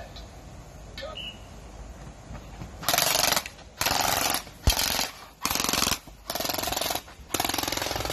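Custom-built Gen 8 M4A1 gel blaster firing in short fully automatic bursts of rapid clicks, about six bursts of roughly half a second each in the second half, with its suppressor fallen off.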